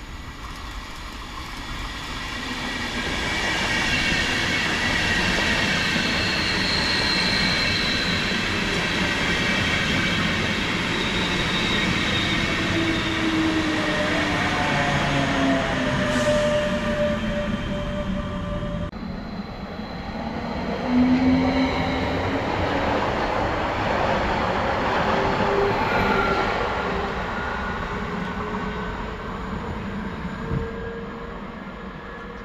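Electric locomotive hauling an Intercity train past the platform: rail and wheel noise swells over the first few seconds and stays loud. Several whining traction tones glide downward as the locomotive goes by, and further whining tones rise in the second half before the noise eases near the end.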